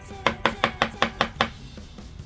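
A coin scratching the latex coating off a scratch-off lottery ticket in seven quick, evenly spaced strokes, about six a second.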